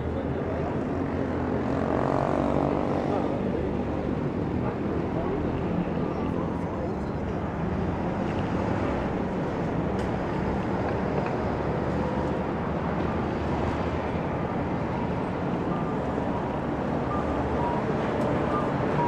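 Steady low rumble of city road traffic, with cars and trucks on the street and on the elevated expressway overhead; about two seconds in, one engine note rises as a vehicle pulls away.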